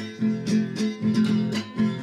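Background music: an acoustic guitar strumming a regular rhythm, the instrumental opening of a cueca song.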